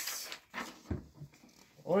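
A sheet of paper rustling as it is lifted off a table and turned round to be held up, with a soft knock about a second in.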